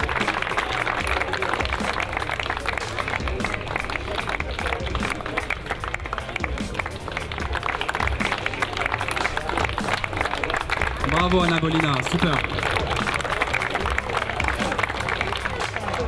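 A crowd applauding steadily over background music.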